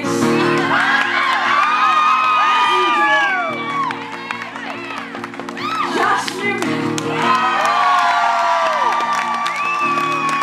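Live acoustic band of acoustic guitars and a cello playing a song's opening, with held low notes throughout. An audience cheers and whoops over it in loud waves, easing off about halfway through and swelling again.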